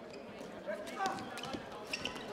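Faint arena sound of a floorball game in progress: a few sharp clicks of sticks and the plastic ball on the court floor, with distant voices in the hall.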